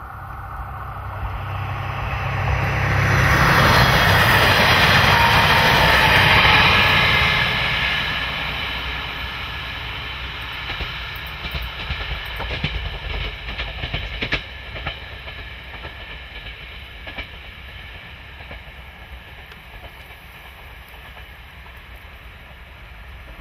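KiHa 40-series diesel railcar passing close by and running away into the distance: engine and wheel noise swell to a loud peak a few seconds in, then fade steadily. Midway there is a run of sharp clacks from its wheels over rail joints.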